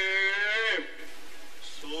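A man's voice holding one long drawn-out vowel at a steady pitch, which drops as it ends a little under a second in. About a second of low steady hiss follows, then the voice starts chanting again near the end.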